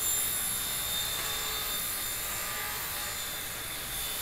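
Steady whooshing hiss of room noise with a few faint high steady tones, unchanging throughout.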